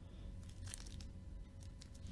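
Faint rustling and light scraping of trading cards and a clear plastic card holder being handled, a few short scrapes about halfway through and again near the end.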